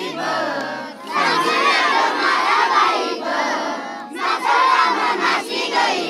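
A crowd of children shouting together, in two loud bursts: one starting about a second in, the other about four seconds in.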